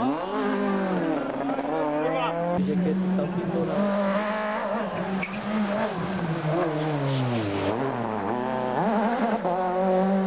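Rally kit car engines running hard. One car is accelerating with rising revs. After a cut, a Škoda Octavia Kit Car's two-litre four-cylinder comes past at high revs; about seven seconds in its engine note drops steeply, then climbs again as it pulls away.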